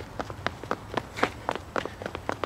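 Running shoes patting quickly on a paved path as three people run in place in a quick-feet drill: rapid light footfalls, about five a second.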